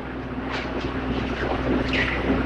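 Low rumble and hiss with a faint steady hum, growing gradually louder: the background noise of an old lecture recording.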